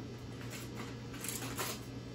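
A plastic cookie package rustling and crinkling in a few short spells as a Coke-flavored Oreo is taken out of it, over a faint steady low hum.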